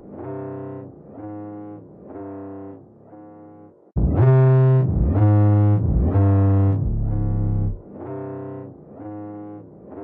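Instrumental intro of a trap beat: synthesizer chords repeating in a slow, even pattern, soft at first, then louder with a deep bass joining about four seconds in. No drums yet.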